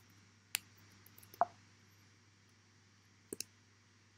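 A few scattered computer keyboard key clicks: one about half a second in, a short cluster ending in a louder knock with a brief ring, then a quick pair near the end.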